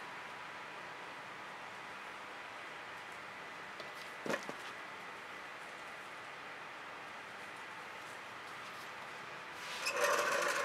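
Faint, steady background hiss of quiet outdoor ambience, with one brief short sound about four seconds in.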